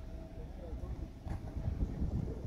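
Wind buffeting the microphone outdoors, a low uneven rumble, with faint distant voices.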